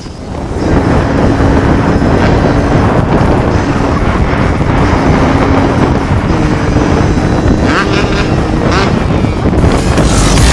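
Supermoto motorcycle engine running at a fairly steady pitch while riding, with heavy wind noise on the helmet-mounted camera microphone.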